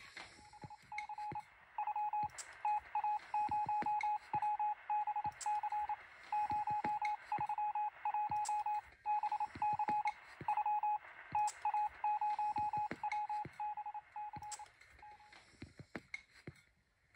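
Electronic beeping in the style of Morse code: one steady mid-pitched tone keyed on and off in quick short and longer beeps, with faint clicks underneath. The beeping stops shortly before the end.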